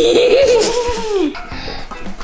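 Young girls laughing, a high wavering laugh for about the first second and a half, over background music.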